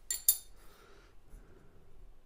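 A Damasteel knife blade clinking twice in quick succession against the metal anvil of a Rockwell hardness tester as it is set in place under the indenter.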